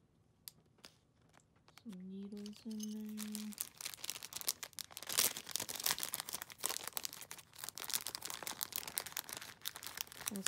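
Clear plastic packaging crinkling and rustling as it is handled, a dense continuous crackle starting about three and a half seconds in. Before it, a few light clicks and a short hummed voice.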